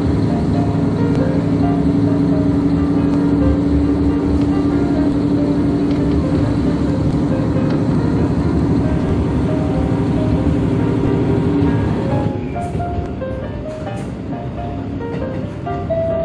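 KiHa 150 diesel railcar's engine running under power from inside the car as the train pulls away from a station, a steady pitched drone that drops away about twelve seconds in. Music plays over it.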